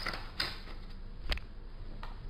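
Ballpoint pen and hand on paper: three soft clicks, one at the start, one about half a second in and one just past a second in.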